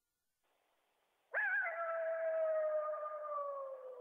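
A single long coyote howl starting about a second in: it wavers at first, then holds and slowly falls in pitch before fading.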